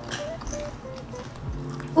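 Soft background music: a few short notes stepping downward over a steady low tone.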